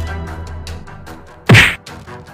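A single loud whack sound effect for a blow knocking a figure down, about one and a half seconds in, with a quick falling tone. Background music fades beneath it.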